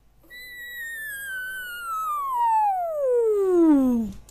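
A descending whistle sound effect: one long tone that slides steadily down from high to low while growing louder, then cuts off.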